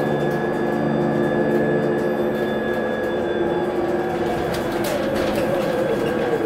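Cabin of a Proterra ZX5 battery-electric bus on the move: the electric drive's steady whine of several tones over road noise, with a few light clicks and rattles near the end.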